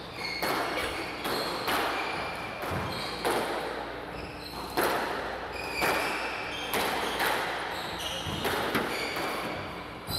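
Squash rally: the ball cracking off rackets and walls about once a second, each hit echoing in the hall, with short high squeaks of shoes on the wooden court floor.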